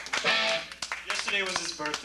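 Voices talking between songs, with some electric guitar notes and a few sharp knocks.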